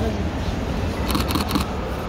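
Camera shutters firing in a quick burst of clicks about a second in, over crowd chatter and a low background rumble.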